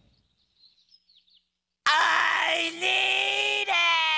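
Near silence for about two seconds, then a cartoon voice from a SpongeBob clip lets out a long, loud yell that holds one pitch and sags slightly, breaking briefly twice.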